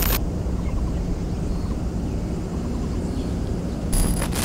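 Steady low outdoor rumble of open-air ambience, with no music. A loud hiss cuts off just after the start.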